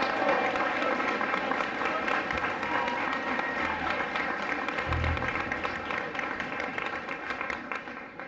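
Audience applauding at the end of a piece, dying away near the end.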